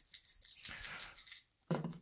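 A handful of small dice thrown into a dice tray, clattering and tumbling against each other and the tray's sides for about a second and a half before settling.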